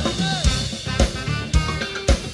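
Drum kit played in a live band: bass drum and snare strikes about twice a second in a steady groove, with the rest of the band sounding underneath.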